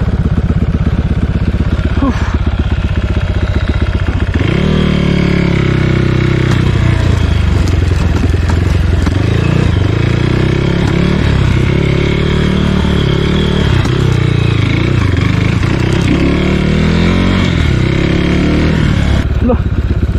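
Dirt bike engine running, putting steadily at low revs for the first few seconds, then revving up and down again and again as the bike is ridden over rough grass.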